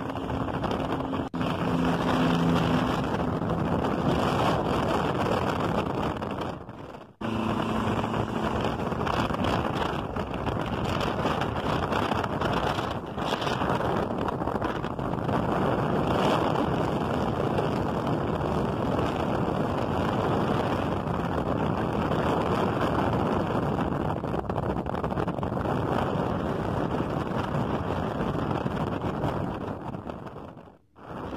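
Wind and road noise rushing past an open car window at highway speed, mixed with the steady running of vintage intercity coaches' diesel engines close alongside. The sound cuts out briefly about seven seconds in, then carries on the same.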